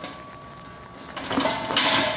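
Metal clinking and scraping of a wrench working the hose fitting at a propane regulator to loosen the line, starting about a second in.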